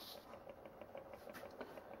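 A small electric rotating display stand turning, heard faintly: a low steady hum with light regular ticking, about five ticks a second.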